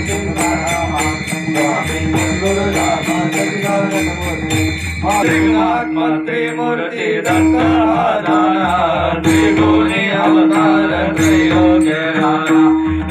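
Varkari bhajan: a group of men sings a devotional chant over a steady held drone, kept in time by small hand cymbals (taal) struck about three to four times a second. The cymbal beat thins out for a moment about halfway through, and the singing comes forward after that.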